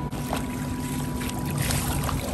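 Pool water sloshing and splashing close to the microphone as a person moves through it, with a faint steady hum underneath.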